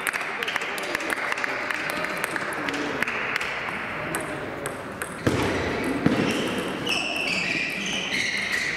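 Table tennis balls clicking sharply and often on bats, tables and floor in a hall with several matches going on, over background voices.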